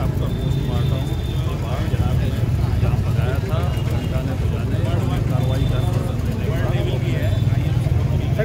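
Steady low engine rumble of road traffic under a crowd of people talking.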